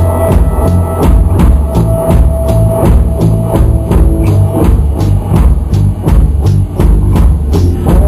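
Live rock band playing an instrumental passage: drum kit keeping a steady beat with heavy bass drum, under electric guitar and bass.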